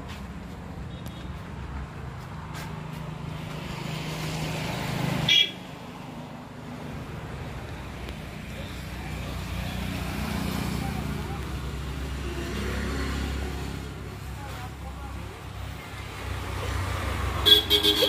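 Road traffic going by close at hand: a steady vehicle engine rumble, with a short horn toot about five seconds in that cuts off suddenly.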